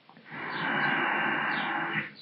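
A man's long, audible breath out, a steady rushing hiss that starts just after the beginning and lasts about a second and a half.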